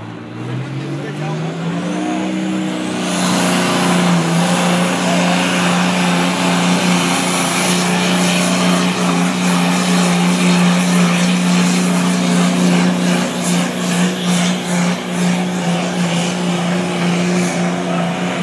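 A competition pulling tractor's engine at full throttle, dragging the weight sled down the track. Its pitch climbs over the first two or three seconds and then holds steady. The sound grows louder about three seconds in and stays loud to the end.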